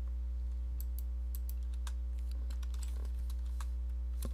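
Computer keyboard being typed on: a dozen or so irregular key clicks, over a steady low electrical hum.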